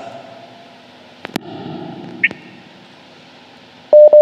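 Sharp clicks and pops over low background noise. Two quick clicks come just after a second in, a short high blip follows about a second later, and a louder cluster of pops comes right at the end.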